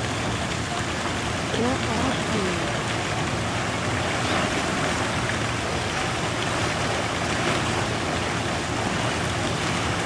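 Water splashing and churning steadily as two elephants wade and spar in a deep pool, throwing up spray.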